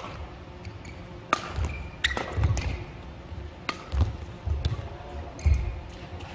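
Badminton rally: racket strokes hitting the shuttlecock about every one to two seconds, with the players' feet thudding on the court and brief shoe squeaks between shots.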